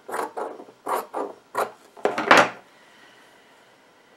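Scissors snipping through fabric, about four short cuts over the first two and a half seconds.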